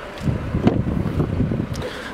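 Wind buffeting the microphone as a low, uneven rumble, with a couple of light clicks.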